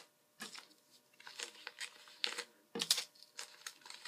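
Paper card and packaging being handled and put back into a package: light rustling with a few scattered soft taps and clicks, the loudest a little before three seconds in.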